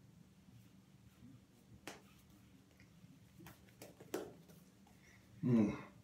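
Double-edge safety razor strokes on lathered stubble: faint, scattered scratchy clicks, a few seconds apart. Near the end comes a short low murmur, louder than the clicks.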